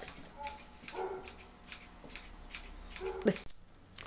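Scissors snipping through the black tulle netting of a skirt to shorten its hem: a quick, irregular run of snips that stops shortly before the end, with a faint voice now and then.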